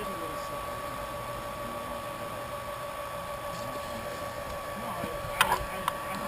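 Small electric brewing pump running steadily, circulating wort through a plate chiller, with a constant motor hum. Two sharp clicks come near the end.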